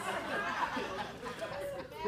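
Murmur of several voices talking over one another: a comedy club audience chattering.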